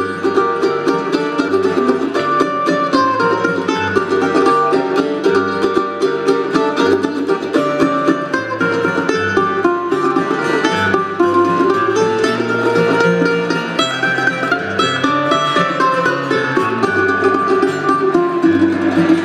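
Mandolin and acoustic guitar playing an instrumental break, a quick picked melody of many short notes over the guitar's steady accompaniment.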